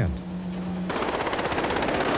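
A steady low hum, then about a second in a sudden fast, even rattle of automatic gunfire from a film soundtrack. It is heard as narrow-band 11 kHz, 8-bit PCM audio.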